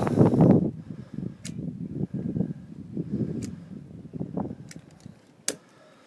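Mortar being worked onto clay roof tiles with a hand tool: irregular scraping and knocking with scattered sharp clicks and phone handling noise. One louder click comes near the end, after which it goes quieter.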